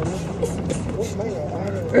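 Indistinct background voices, ending in a loud shout of "hey" right at the end.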